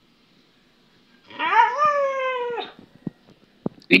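Siberian husky giving one drawn-out whining call, about a second and a half long, that rises in pitch, holds, then drops away: the husky asking for more food.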